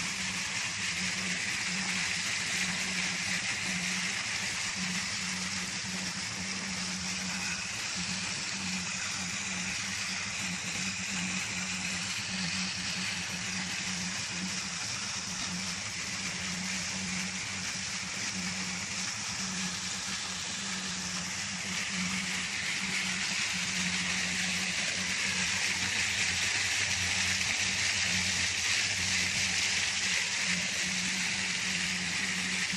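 Water gushing hard from an irrigation pump set's discharge pipe: a steady dense rushing splash, with a steady low hum underneath. The rush grows a little louder and brighter after about twenty seconds.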